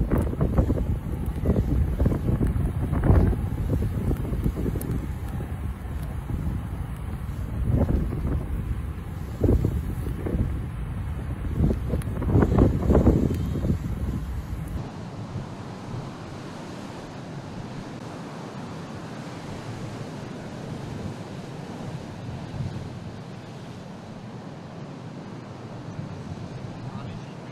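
Strong gusty wind buffeting the microphone over storm surf, in heavy irregular gusts. About fifteen seconds in, the sound drops to a quieter, steady rush of heavy surf.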